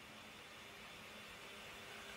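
Near silence: faint steady hiss of room tone with a faint low hum.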